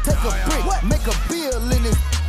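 Hip hop track with a rapped vocal over a deep bass line and hi-hat ticks.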